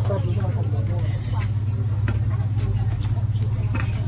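An engine idling close by: a steady low hum with a fast, even pulse. Faint voices chatter over it.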